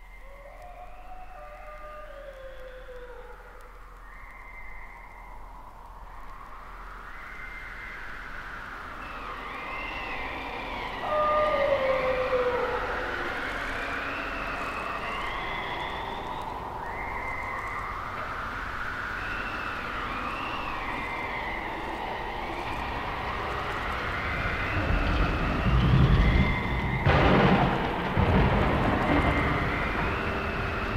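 Electronic space-effect sounds on a vinyl LP: slow wavering tones that rise and fall about every four seconds, growing louder about a third of the way in. A deep thunder-like rumble swells up in the last few seconds.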